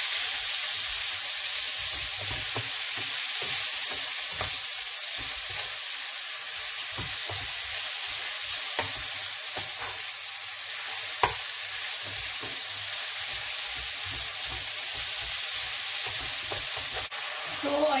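Oyster mushrooms and garlic sizzling in margarine in a frying pan while a wooden spatula stirs them, tapping and scraping against the pan. A steady sizzle with scattered light knocks, two sharper ones about nine and eleven seconds in.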